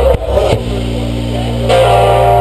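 Rock band playing live: electric guitars and bass guitar hold sustained chords that change just after the start, about half a second in, and again near the end, each change struck sharply.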